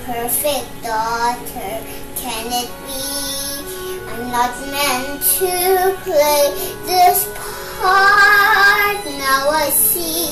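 A young girl singing a song, note by note, with one long held note about eight seconds in.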